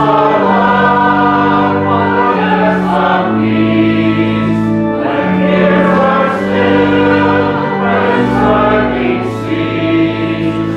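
A church congregation singing a hymn together in slow, held notes that change about once a second.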